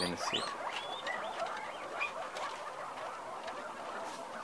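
Peru-line guinea pigs squeaking in short, high, rising chirps, thickest in the first second and sparser later, with scattered light clicks.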